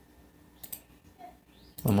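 Two quick, faint computer mouse clicks a little over half a second in. A man's voice starts speaking near the end.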